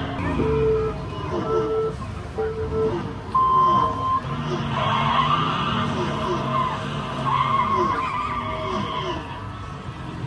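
Race sound effects at a Lego model race track: a start countdown of three short low beeps and a longer, higher beep, then race-car engines revving and tyres squealing.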